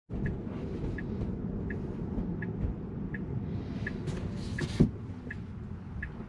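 Tesla cabin: the turn-signal indicator ticking evenly, about three ticks every two seconds, over low road noise as the car slows. Just before five seconds in there is a brief rustle ending in a single thump.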